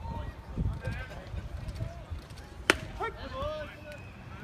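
Scattered voices of players and spectators calling out around a baseball field, with one sharp pop about two-thirds of the way through.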